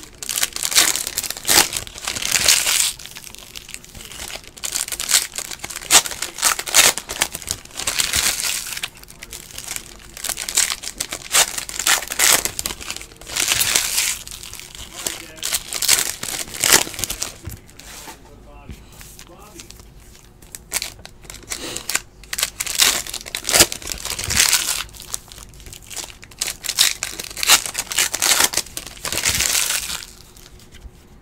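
Foil trading-card pack wrappers crinkling and tearing as packs are ripped open and handled, in repeated bursts of sharp crackle with short pauses between.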